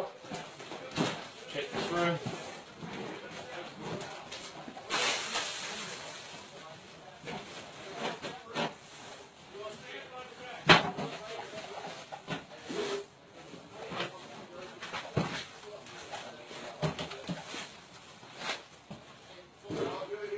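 Muffled, indistinct voices of people talking out of view, with scattered knocks and clicks. There is a short burst of hiss about five seconds in and a sharp click a little before eleven seconds.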